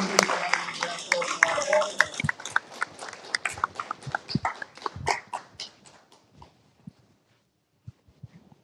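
A small group applauding, the claps dense at first with voices over the first two seconds, then thinning out and dying away about six seconds in.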